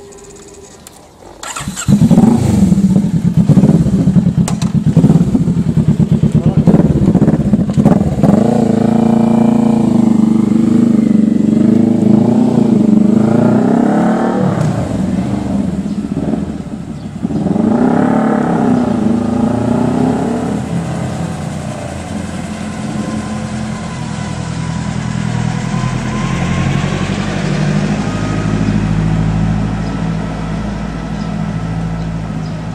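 Kawasaki Vulcan S parallel-twin engine with an aftermarket exhaust starting about two seconds in and idling. It then rises and falls in pitch through the gears as the bike pulls away, and grows fainter as it rides off.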